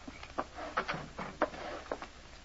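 Radio-drama sound effect of footsteps on wooden boards: two people walking, an irregular run of about half a dozen knocks with some scuffing between them.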